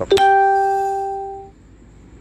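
A single bell-like electronic chime: one clear note that starts suddenly just after the start, fades over about a second and a half, then cuts off.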